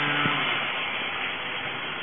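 Steady rushing background noise with no speech. A low steady hum stops just after the start.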